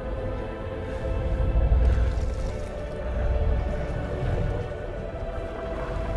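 Film score music with long held tones over a deep low rumble, the rumble swelling about two seconds in.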